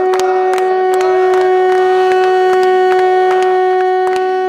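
A conch shell blown as a horn, holding one long steady note, with hands clapping through it.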